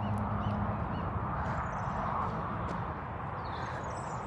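Steady outdoor background noise with three faint, short bird chirps in the first second and a few faint light clicks.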